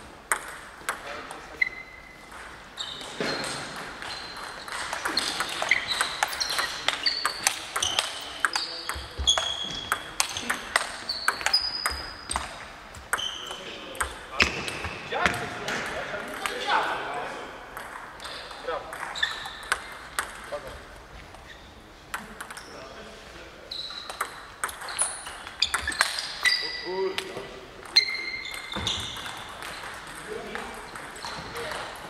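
Table tennis balls clicking on tables and bats in an echoing hall, in irregular runs of sharp knocks, many with a short high ping.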